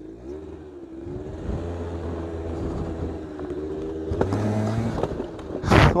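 Aprilia SR50 two-stroke scooter engine running under throttle as the scooter rides along, rising in level over the first couple of seconds, with wind noise over it. About four seconds in there is a click, and the engine settles into a steadier hum for about a second.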